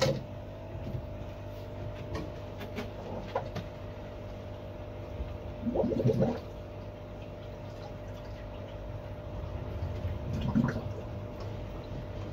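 Water running steadily through a hose during an aquarium water change, over a constant low hum, with a few light knocks and a brief louder sound about six seconds in.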